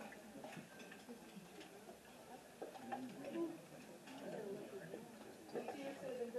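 Low murmur of audience chatter with scattered light clicks and taps as people search under their chairs for small instruments and mallets.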